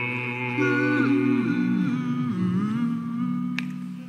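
Male vocal group humming a sustained, close harmony, several voices holding and sliding between notes, with one low voice at the bottom. It fades out near the end.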